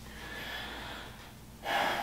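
A man breathing between sentences: a long soft breath, then a sharper, louder breath near the end.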